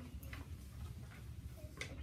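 Quiet classroom room tone: a steady low hum with a few faint, light clicks and taps, the clearest one near the end.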